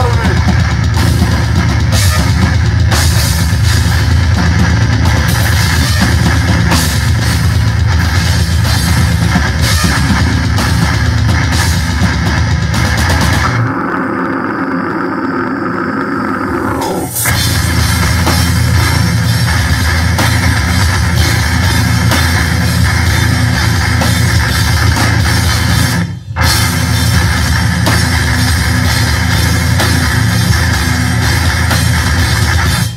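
Heavy metal band playing loud live: drum kit with cymbals, distorted guitar and bass. About 14 s in the drums and low end drop out for about three seconds, leaving a midrange part, before the full band comes back in; there is a brief stop about 26 s in.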